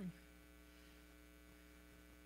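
Near silence, with a steady electrical mains hum.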